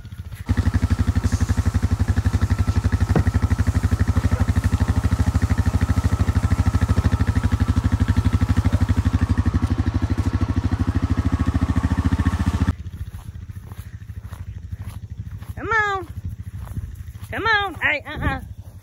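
Four-wheeler (ATV) engine running steadily close to the microphone, with a fast, even pulse. It cuts off abruptly about 13 seconds in.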